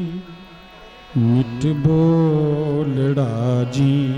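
Gurbani kirtan: a man singing a devotional hymn to harmonium accompaniment, with occasional tabla strokes. The music drops to a brief lull in the first second, then the voice and harmonium come back in and carry a held, wavering line to near the end.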